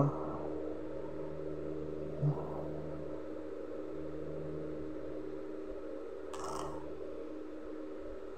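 Steady low background hum, with a short faint blip about two seconds in and a brief soft noise about three-quarters of the way through.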